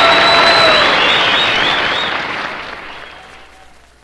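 A live audience applauding after the song ends. The applause fades steadily away to nothing by the end.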